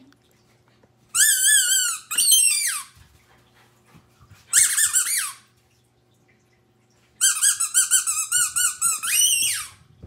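Squeaky orange spiky rubber dog ball squeezed by hand: five high, wobbling squeaks in three bunches, two near the start, one in the middle and two long ones near the end.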